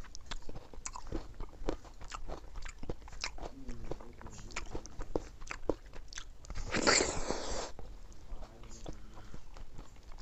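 Close-miked mouth sounds of a person eating milky rice pudding with the fingers: wet chewing, lip smacks and small clicks throughout, with one longer, louder wet sound about seven seconds in.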